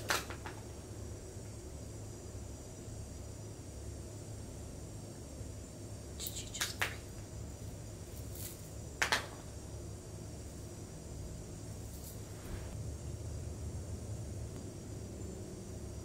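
Quiet room tone with a steady low hum, broken by a few short clicks of beaded bracelets knocking together as they are handled on a wrist, the loudest about six and nine seconds in.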